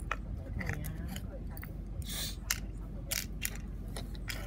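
Small hinged plastic case being handled and opened: a run of light plastic clicks and scrapes, with a brief rustle about two seconds in.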